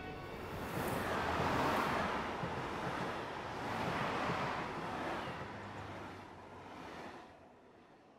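Street ambience of a van driving past and a train going by beyond it: a steady rushing that swells twice, then fades away near the end.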